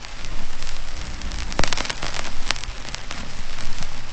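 A steady crackling noise, much like rain, scattered with sharp clicks over a low hum; two louder clicks stand out in the middle.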